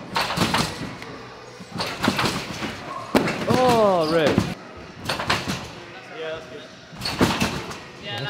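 Several irregular thuds of gymnasts bouncing on a trampoline bed and landing on a foam crash pad. About three and a half seconds in, a person gives a long shout that rises and then falls in pitch.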